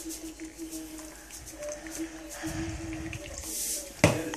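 Eggs frying quietly in a pan while a salt shaker is shaken over them, giving faint light ticks and rattles, over a steady low hum.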